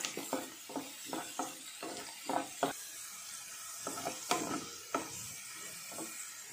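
Oil sizzling steadily in a non-stick pan as finely chopped pieces fry, with irregular scraping taps of a wooden spatula stirring them against the pan.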